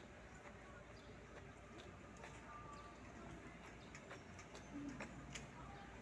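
Near silence: faint outdoor background with soft clicks, about one to two a second, from footsteps on a concrete walkway.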